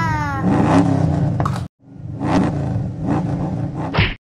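Big engine revving, a dubbed monster-truck sound effect, in two stretches with a sudden short gap about two seconds in; it cuts off abruptly at the end.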